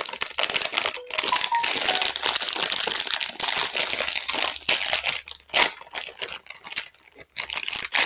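Plastic mailer bag crinkling and rustling as it is handled and opened close to the microphone. The crinkling is dense and nearly continuous for the first five seconds, then comes in shorter spurts.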